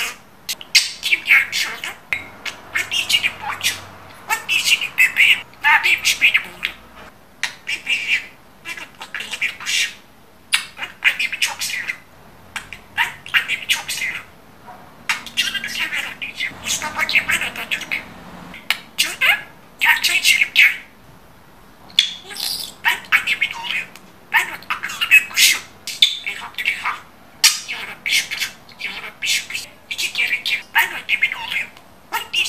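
Budgerigar warbling and chattering: rapid runs of chirps, clicks and squawks in bursts of a second or two, with short pauses between them.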